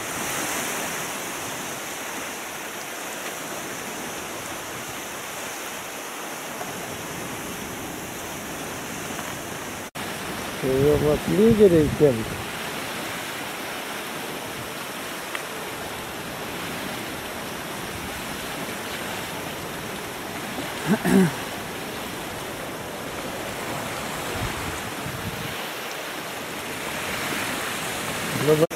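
Steady rush of wind and choppy lake water, with short bursts of a person's voice about eleven seconds in and again near twenty-one seconds.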